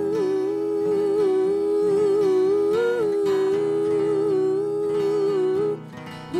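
Voices holding one long wordless note in harmony over strummed acoustic guitar, breaking off just before the end.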